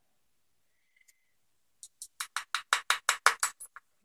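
Small metal lock pins from an American 1100 padlock accidentally dumped and spilling onto the workbench: a quick clatter of about a dozen light clicks over two seconds, starting near the middle.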